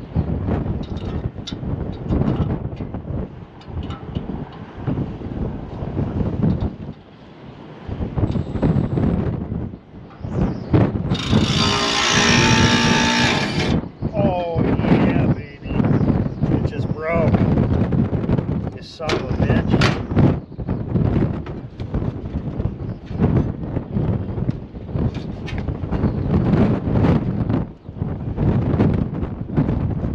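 Wind gusting on the microphone. About eleven seconds in, a cordless Milwaukee driver runs for about three seconds. A few short squeaks follow.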